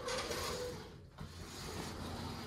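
Mirrored sliding closet door rolling along its track as it is pushed by hand. It moves in two runs with a short pause about a second in, and the first run carries a faint squeal.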